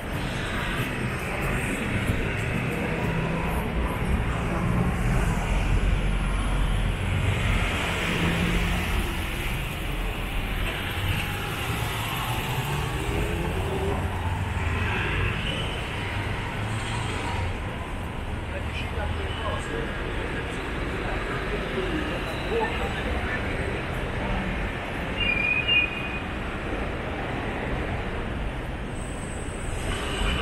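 City street traffic running steadily, with a low engine rumble that is strongest from about 4 to 12 seconds in, and a short high beep about 25 seconds in.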